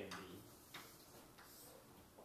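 Chalk on a blackboard during writing: three faint sharp taps, about two-thirds of a second apart.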